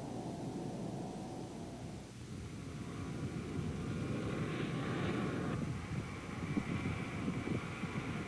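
Jet noise from a Lockheed L-1011 TriStar's Rolls-Royce RB211 turbofans as the airliner flies low past. The sound swells with a rising hiss around the middle and then eases off.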